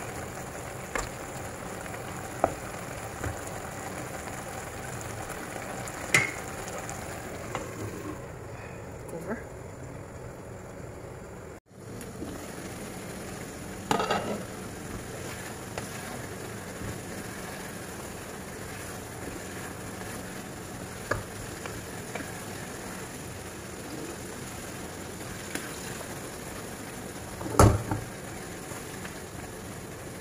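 Sliced apples sizzling in melted butter and brown sugar in a frying pan, stirred with a wooden spatula that knocks sharply against the pan now and then. The sugar is being cooked down to caramelize the apples as they soften.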